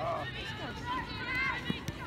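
Women footballers shouting and calling to one another in high voices during open play. There are two short dull thuds near the end.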